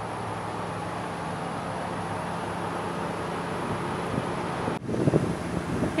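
Steady outdoor background noise with a faint low hum, cut off briefly about five seconds in and followed by rougher, wind-like noise on the microphone.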